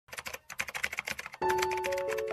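Rapid computer-keyboard typing clicks, about a dozen a second, with piano music coming in about one and a half seconds in.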